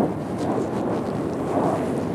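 Skis sliding and scraping over firm, packed snow, with wind rushing over an action camera's microphone, a steady noise throughout.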